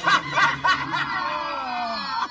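A person laughing in quick bursts, then trailing off in one long laugh that slowly falls in pitch.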